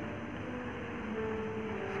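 Steady background noise with a few faint, steady low hums and no distinct events.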